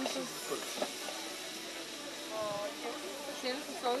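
Meat sizzling as it sears in hot frying pans, a steady hiss, with faint voices underneath.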